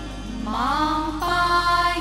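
A chorus of women singing a traditional Gujarati garba folk song in unison through microphones. Their voices slide upward together and then hold a long sustained note.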